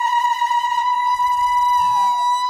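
A woman ululating (Moroccan zaghrouta), a traditional cry of joy at a celebration. It is one long, high, trilled note held steadily.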